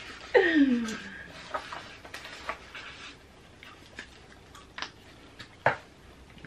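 A short falling voice sound in the first second, then scattered light taps, scratches and clicks of dry-erase markers writing on paper and sheets being handled, with one sharp click near the end.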